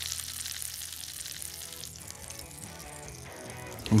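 Soft background music over the light sizzle of peanut-crusted red mullet fillets in hot olive oil, the gas turned off under the pan.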